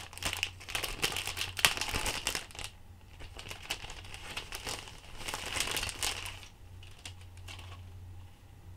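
Cellophane bag crinkling as it is pulled and peeled off a rigid acrylic fan grill: a dense crackle for the first two or three seconds, a second burst around five to six seconds in, then it dies down.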